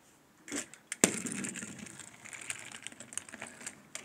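A small toy vehicle set down with a sharp click, then pushed by hand along a cardboard road and over a railway crossing, giving a continuous crackly rattle of small clicks.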